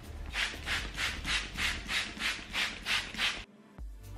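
Trigger spray bottle misting water onto hair: a quick, even run of about eleven squirts, roughly three a second, that stops suddenly near the end, just before music with a steady beat comes in.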